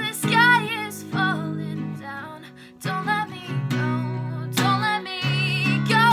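Acoustic guitar strummed in chords, with a woman singing over it and holding notes with vibrato.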